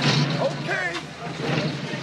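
Voices calling out over a vintage touring car's engine running with a steady low hum, with a sharp bang right at the start.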